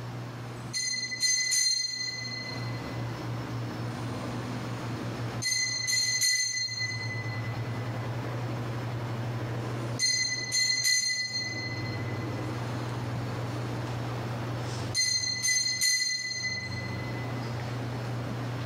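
Altar bell rung at the elevation of the chalice during the consecration: four rounds of three quick strikes, each round ringing out for about a second and a half, over a steady low hum.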